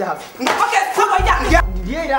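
Voices over background film music.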